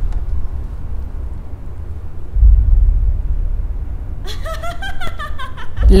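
Deep low booms, one about two and a half seconds in and another just before the end, over a continuous low rumble. From about four seconds in, a voice giggles and laughs in short breaking notes that swoop in pitch.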